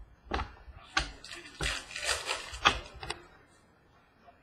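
Trading cards and pack wrappers being handled close to the microphone: a run of rustling and sliding with several sharp clicks, densest and loudest about two to three seconds in.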